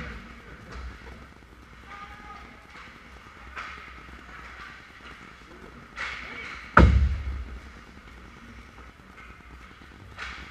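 Ice hockey rink play heard from the goal: skates hissing across the ice, then one sharp, heavy hit at the net just before seven seconds in, the loudest sound, with a deep thud that dies away over about a second. Faint voices sound around the rink.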